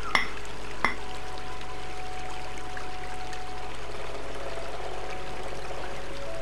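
A rock hammer striking a layered rock face twice in the first second, sharp clinks of steel on stone, over the steady rush of a stream.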